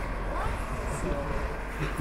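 Street ambience: a steady low rumble under faint voices.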